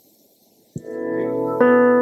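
An electronic keyboard holds a sustained chord. It comes in about three quarters of a second in, after a quiet pause, and more notes join it about halfway through.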